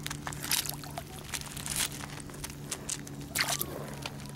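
Small waves lapping over a pebble beach at the water's edge, a run of short irregular splashy hisses, over a faint steady low hum.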